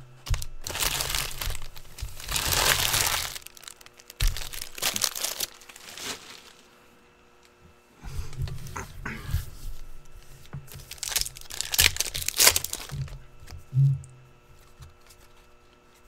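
Shiny foil wrappers of Topps Stadium Club trading-card packs being torn open and crumpled by hand, in several bursts of crinkling and crackling, with cards being handled and squared into a stack between them.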